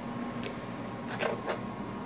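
Low steady electrical hum with a faint high tone held steady over it, and a few soft clicks.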